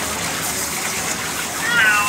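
Water spraying steadily from a hand-held grooming-tub sprayer onto a cat's wet coat as the shampoo is rinsed out. A voice comes in near the end.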